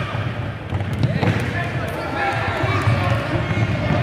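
Children's voices shouting and calling over one another in an echoing sports hall, with the thud of a football being kicked and feet on the wooden floor.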